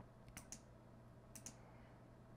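Faint computer mouse clicks, two quick pairs about a second apart, over near-silent room tone.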